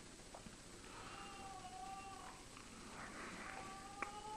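A cat meowing faintly: two long drawn-out calls, the first about a second in and the second starting near three and a half seconds.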